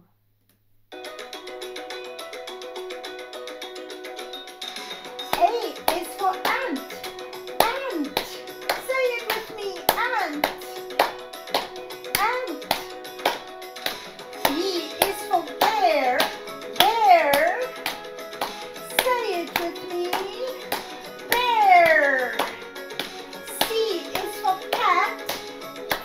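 Upbeat children's sing-along music with a steady beat, starting about a second in, with hand claps on the beat. From about five seconds a voice sings over it in sliding, swooping phrases.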